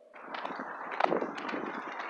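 Rustling handling noise on a handheld phone's microphone as it is moved, with a couple of sharp clicks about a second in.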